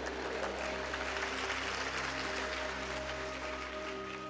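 Faint audience applause, with soft background music of long held notes underneath.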